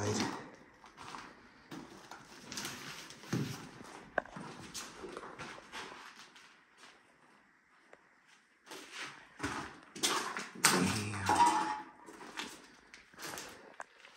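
Footsteps crunching and scuffing over plaster rubble and debris on a concrete floor, irregular, with a quieter pause past the middle and a louder cluster of crunches a little later.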